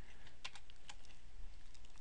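Computer keyboard keys clicking faintly, a few light keystrokes such as those that enter a Ctrl+Alt+G key combination, the clearest about half a second in.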